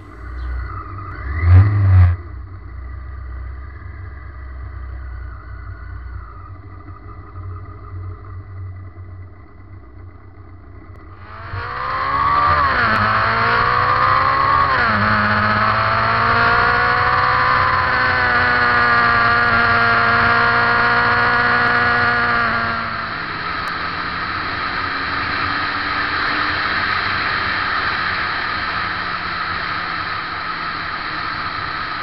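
Suzuki GS1100E's air-cooled inline-four engine heard from the bike while riding. There is a short loud rev near the start, then quieter running. About a third of the way in the engine pulls hard, pitch rising and dropping as it goes through the gears. In the last third it settles to a steadier cruise under a rush of wind.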